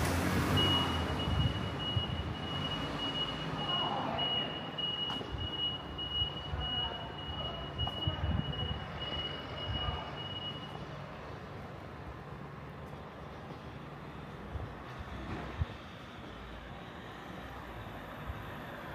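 A small kei car drives past close by: engine and tyre noise, loudest at the start, then fading into steady street hum. A high electronic beeping pulses without a break from about half a second in until about eleven seconds in, then stops.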